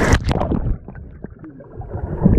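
Breaking surf and splashing cut off abruptly as the microphone goes under the sea. What follows is muffled underwater sound with scattered small bubble clicks and pops, quieter through the middle.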